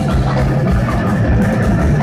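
Heavy metal band playing live: heavily distorted electric guitars over bass and drums, with cymbals ringing through, loud and steady.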